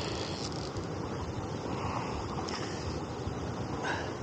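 Steady rush of flowing river water, with wind noise on the microphone.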